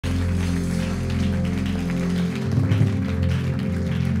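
Live church worship music: held keyboard chords over a deep bass, changing chord a little past two seconds in, with the congregation clapping along.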